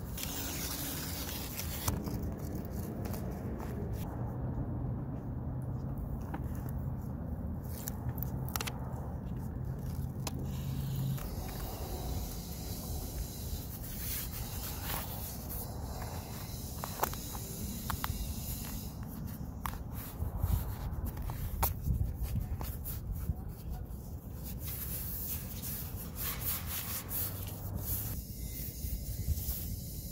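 Hands rubbing and pressing self-adhesive roof sealing tape down onto an RV roof, with the paper backing rustling and scattered brief scrapes and clicks, over a steady low rumble.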